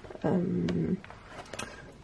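A woman's long, drawn-out hesitation sound "euh", held on one steady pitch for under a second. After it come faint paper rustles and light clicks from the pages of a colouring book being turned.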